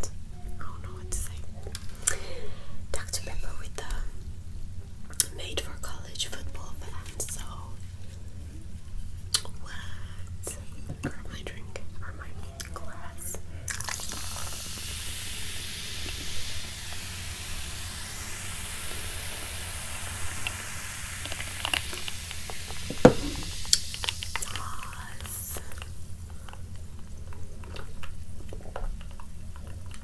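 Dr Pepper soda poured from a can into a glass and fizzing, a steady hiss lasting about ten seconds from just before the middle, with one sharp knock near its end. Scattered soft clicks and taps come before and after the fizz.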